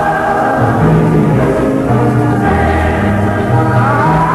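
Gospel choir singing with instrumental accompaniment, heard from an old radio broadcast recording.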